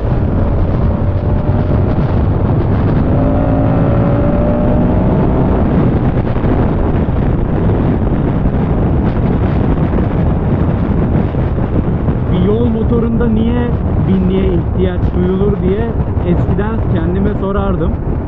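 Moto Guzzi V100 Mandello's transverse V-twin under hard acceleration in fourth gear, its note rising over the first few seconds, then easing off as the bike slows. Heavy wind rush on the microphone runs under it throughout.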